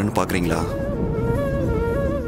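A steady, held buzzing tone from the background score, its upper notes wavering slightly, setting in just after a brief bit of speech at the start.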